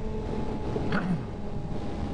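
Suzuki GSX-R sportbike engine running at a steady cruise, a low even note under wind and road rumble on the rider's microphone.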